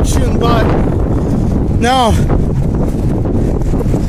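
Strong wind buffeting the microphone, a loud, continuous low rumble.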